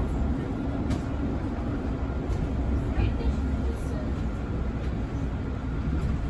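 Mercedes-Benz Citaro 2 city bus heard from inside while driving: a steady low engine rumble with road noise. There are a couple of light clicks or rattles, about a second in and again about three seconds in.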